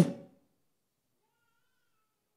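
The end of a man's spoken word, 'vous', its pitch rising and falling before it fades out within a fraction of a second, then near silence.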